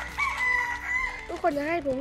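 A rooster crowing once: one long, steady call lasting a little under a second.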